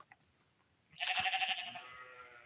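A farm animal bleating once: a long, wavering call that starts about a second in and slowly fades.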